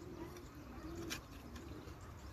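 A garden trowel stirring wet, muddy soil in a plastic tub, with a single sharp scrape about a second in.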